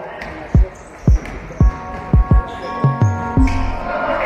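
A basketball being dribbled on a wooden gym floor: a run of sharp bounces about half a second apart, a couple coming in quick pairs. Players' voices rise near the end.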